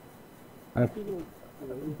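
Quiet room tone, then about three quarters of a second in a man's short low voiced sound, followed by two faint murmured syllables, heard through the chamber microphone.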